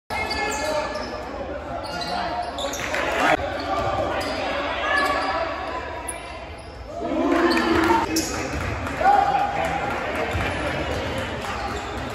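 Game sounds in a basketball gym: a basketball bouncing on the hardwood court, with players' and spectators' voices shouting, the loudest calls a little past halfway, all echoing in the large hall.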